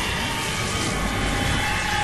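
A steady rushing roar with deep rumble, like an aircraft flying overhead, with a faint whine above it: a sound effect laid over the edited sketch.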